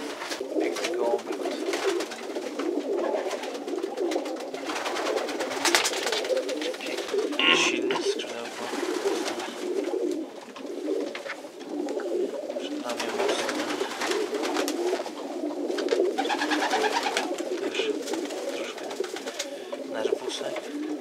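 Many racing pigeons cooing continuously in a loft, a dense, overlapping murmur, with scattered clicks and rustles as a bird is handled.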